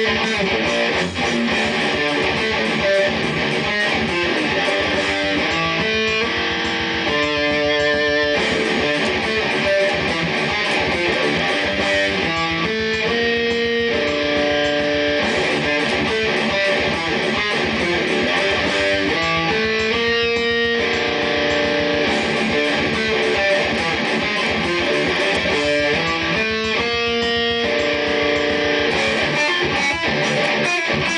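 Heavy distorted electric guitar playing fast, palm-muted metal riffs over a programmed drum-machine beat with rapid kick drums. Held, ringing chords break in about every six to seven seconds.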